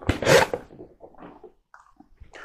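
Cardboard packaging rasping as a small seed pot is slid out of a gift box: one loud scrape at the start, then fainter rustles.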